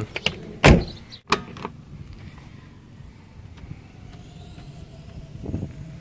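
Front door of a Jeep Cherokee XJ being shut: one loud, sharp thump just under a second in, followed by a lighter knock, then only a faint steady outdoor background.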